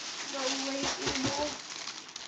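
A soft voice speaking quietly, with a light rustle of wrapping paper as a wrapped present is handled.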